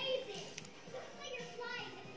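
Faint children's voices talking from a TV or phone playing in the background.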